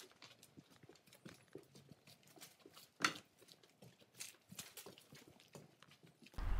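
Faint footsteps on a gritty stone path: irregular scuffs and small clicks of shoes, with one sharper click about three seconds in.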